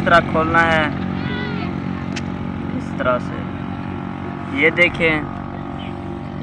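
A steady, unchanging engine drone, loud throughout, with a man's voice speaking a few short words over it.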